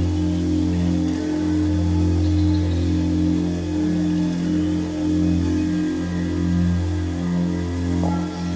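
Tibetan singing bowl sung by working a mallet around its rim: a steady, deep hum with higher overtones above it, swelling and ebbing in a slow wavering pulse.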